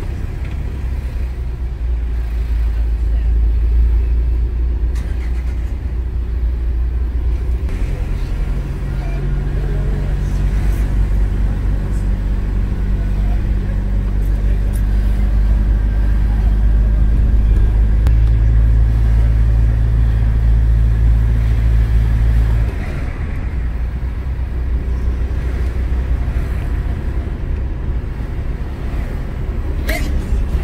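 A car's engine and road noise heard from inside the cabin while driving, a strong low rumble. A steady engine hum joins about eight seconds in and cuts off suddenly about 23 seconds in.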